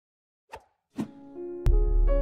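A moment of silence, then two short cartoon pop sound effects about half a second apart, followed by piano music that starts near the end with a deep low hit.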